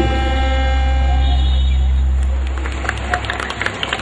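A choir's final held chord over a low, steady drone through a PA system, dying away about two seconds in; then an open-air background haze with scattered small clicks.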